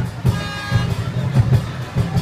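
Lion dance drum beating a fast, steady rhythm, with a brief high toot about half a second in.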